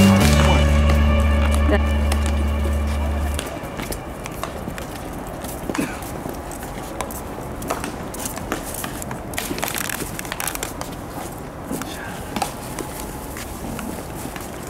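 Background music that stops about three and a half seconds in, then outdoor ambience with faint voices and scattered sharp pops of baseballs landing in leather gloves during a game of catch.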